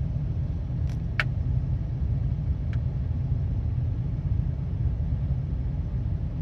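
A steady low background rumble, with three light clicks in the first few seconds as a small plastic Minnie Mouse figurine is picked up and handled.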